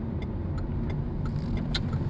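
Car cabin noise while driving: a steady low rumble of engine and tyres on the road, with a few faint clicks.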